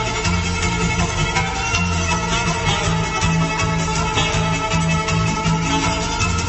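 Live Gypsy-style instrumental played by a band: two violins leading over strummed acoustic guitar, electric guitar and drums, with a pulsing bass line.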